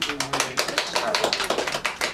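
A small group of people clapping, a quick irregular run of sharp hand claps.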